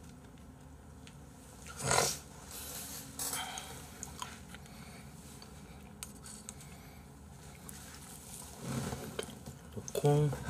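Quiet eating sounds at a table: a few light clicks of metal chopsticks against dishes and one short grunt-like vocal sound about two seconds in.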